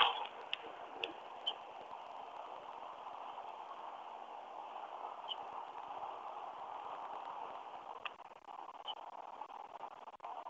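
Faint steady hiss of an open microphone's background noise on an online video call, with a few faint short clicks.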